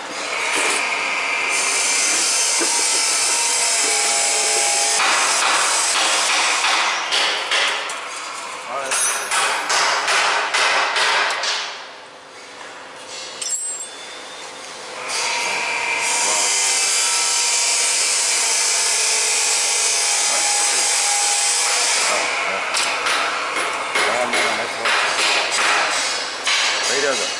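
Steel wire being hand-fed into a chain link fence machine's feed guides and mold: long stretches of steady metallic scraping, broken by irregular clanks and rattles, with a quieter spell near the middle.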